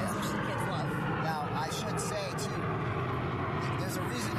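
Steady low hum of an idling truck engine under a person talking.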